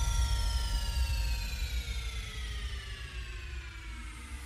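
Track transition in a big room house DJ mix: a slow downward synth sweep of several tones over a low bass rumble, fading gradually.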